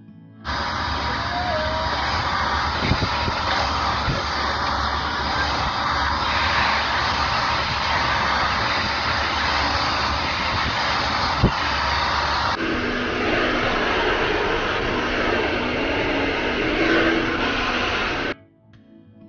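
Hand-held hair dryer blowing, loud and steady, with its sound shifting about twelve seconds in.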